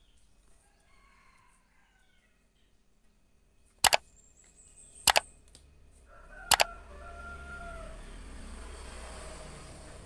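Three loud sharp clicks over the next three seconds as a plastic ruler and set square are laid down on the drafting table. Faint birds chirp before them, and a rooster crows in the background after the last click over a low steady outdoor rumble.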